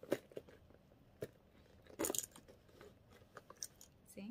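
A leather wallet and a patent-leather handbag being handled, the wallet pushed and shifted inside the bag: a few light clicks and taps, and a short crinkly rustle about two seconds in.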